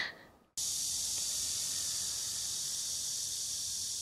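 Cicadas buzzing in a steady, dense, high-pitched chorus that starts abruptly about half a second in.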